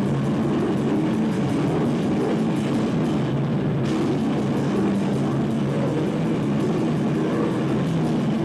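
A heavy rock band playing live and loud: distorted electric guitar over drums, with a fast, even cymbal beat.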